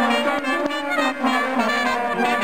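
Trumpet playing close by together with other brass, several held notes sounding at once and moving from note to note.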